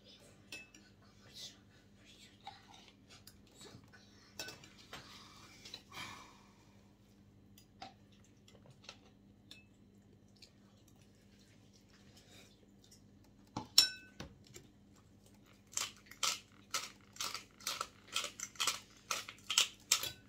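Spoon clinking against a soup bowl: scattered faint taps, one sharp ringing clink about 14 seconds in, then a quick run of taps, about two or three a second, near the end.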